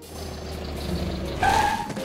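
Cartoon car engine sound effect running and getting louder, with a short high squeal about a second and a half in.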